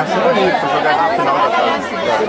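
Several spectators' voices chattering over one another, with no single clear speaker.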